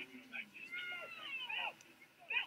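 Faint, high-pitched yells of people celebrating a goal, a couple of long cries falling in pitch, with scraps of distant voices.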